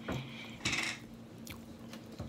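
Light kitchen-utensil noises: a soft clink at the start, a short scrape about two-thirds of a second in, and a couple of faint taps, over a faint steady hum.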